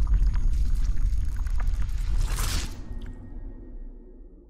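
Cinematic logo-intro sound effect: a deep rumble with scattered crackles, and a bright whoosh about two and a half seconds in, then fading away near the end.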